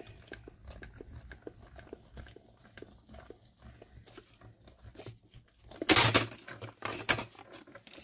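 Small hand-cranked die-cutting machine, shimmed for extra pressure, with its rollers drawing a plate sandwich through: a faint low rumble with small clicks as the crank turns. About six seconds in come a few loud clatters as the plates shoot out the far side.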